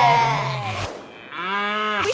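The last chord of a children's song fading out, then about halfway through a long, steady, moo-like call from a cartoon moose in a logo sting.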